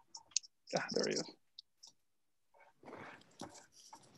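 Video-call audio breaking up: scattered short clicks and a brief clipped fragment of a voice about a second in, then faint noise near the end.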